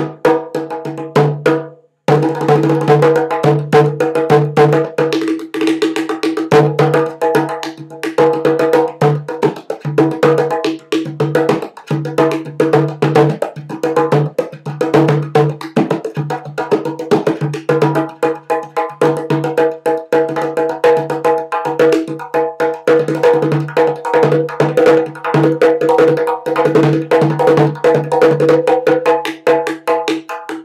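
Handmade three-headed ceramic darbuka with stingray-skin heads, played by hand in a fast, continuous rhythm of many strokes a second, with a ringing low drum note under the strokes. Its side tone hole is covered by the player's leg, so it sounds like an ordinary goblet drum. There is a brief pause just before two seconds in.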